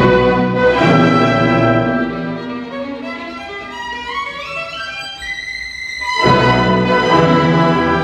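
Solo violin playing a concerto with a symphony orchestra. The full orchestra is loud at first; then it drops back while the violin climbs in a rising run of notes, and the orchestra comes in strongly again near the end.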